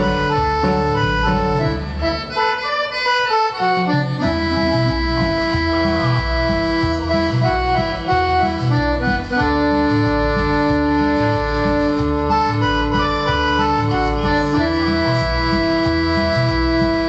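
Cumbia lead melody played on a Korg X50 synthesizer, holding long sustained notes over a steady bass beat. The beat drops out about two seconds in and comes back about four seconds in.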